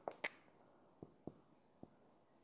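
Near silence with about five small sharp clicks, two close together at the start and three spaced out later: a whiteboard marker being uncapped, handled and set against the board to draw a line.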